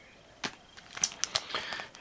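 Foil booster pack wrapper of a Magic: The Gathering pack crinkling as it is handled, giving scattered sharp crackles, more of them in the second half.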